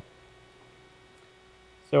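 Faint steady electrical hum with a single thin tone during a pause in speech; a man's voice starts again right at the end.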